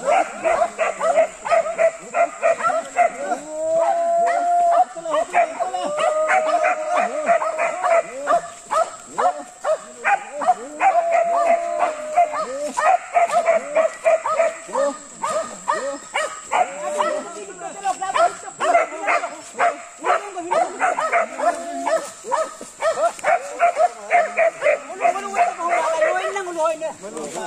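Dogs barking again and again without a break, mixed with people's calling voices.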